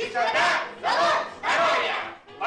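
A group of cartoon characters shouting together in short cries, three in quick succession, each rising and falling in pitch.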